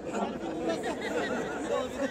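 Several people talking at once: overlapping chatter with no single clear speaker.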